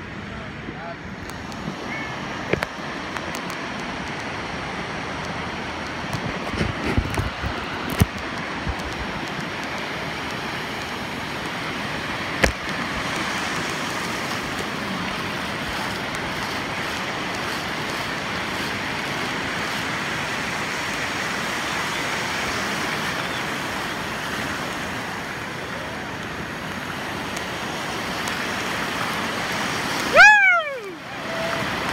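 Sea surf breaking on a beach: a steady rushing noise of waves, with a few sharp clicks and knocks.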